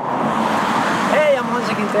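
Steady road traffic noise from a street, with a short voice-like sound about a second in.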